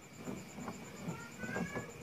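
A cat meowing faintly in the background: a few short rising cries, clearest in the second half.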